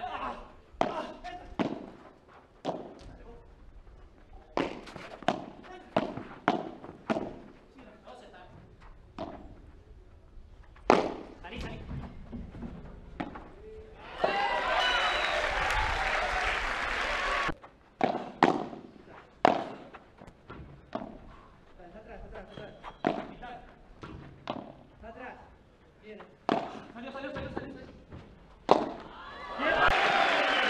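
Padel rallies: a string of sharp, irregular knocks from paddles striking the ball and the ball hitting the glass walls and court. Around the middle, a crowd cheers and shouts for about three seconds as a point is won, and cheering rises again near the end.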